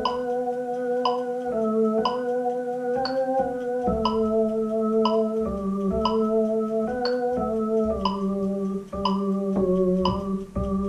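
Electronic keyboard playing a slow piece in held, sustained chords that change every second or so, with a light regular tick about twice a second.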